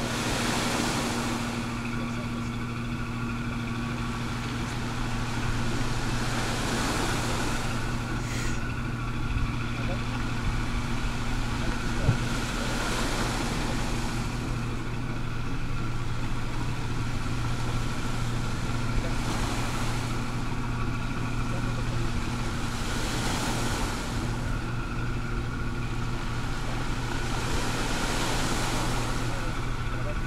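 Small waves washing onto a pebble beach, a soft hissing swell every five or six seconds, over a steady low engine hum.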